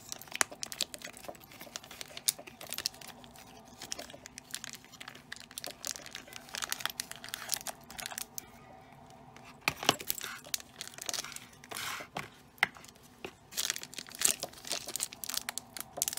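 Plastic surprise packets crinkling and tearing as they are pulled out of Play-Doh and torn open by hand. The crackles are irregular, with a short lull about eight seconds in.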